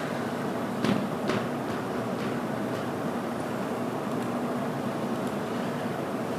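Steady courtroom room tone, a low hum and hiss picked up by an open microphone, with two light knocks a second or so in and a few fainter ticks later.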